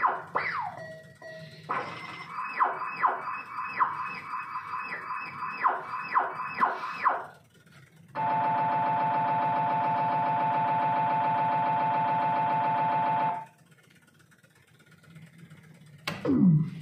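Electronic sounds from a Spanish slot machine after a win. A run of repeated falling chime tones lasts about seven seconds, then a steady buzzing electronic tone plays for about five seconds and stops abruptly.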